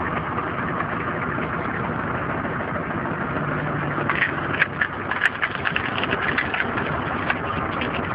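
Cardan-shaft-driven screw cone log splitter running steadily under its drive engine. From about four seconds in, sharp cracks and snaps as the spinning cone bites into a log and the wood splits.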